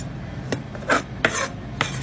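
A knife blade scraping against a wheel of hard Parmigiano Reggiano cheese and across the wooden board, in about four short scrapes, over a low steady hum.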